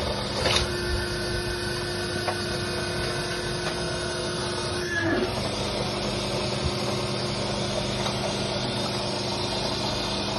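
Interlocking block-making machine's motor running with a steady hum, with a couple of clacks from the operating levers near the start. From about half a second in, a higher steady whine joins it as the press works, ending about five seconds in with a falling pitch as a pressed block is pushed up out of the mould.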